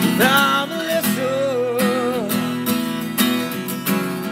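Acoustic guitar strummed steadily, with a man's voice holding a long, wavering sung note over roughly the first half.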